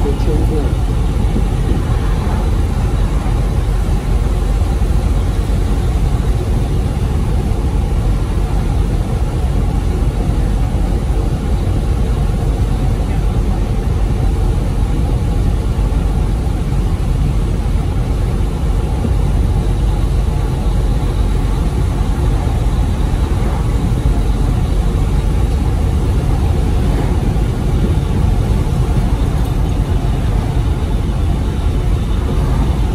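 Steady in-cab drone of a Freightliner Cascadia semi truck cruising at highway speed: engine and tyre-on-road noise, heavy in the low end, with no changes in pace.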